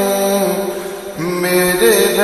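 Slowed-and-reverb naat: a single unaccompanied voice singing long, drawn-out notes with heavy reverb. The sound briefly dips about a second in before the singer starts a new held note.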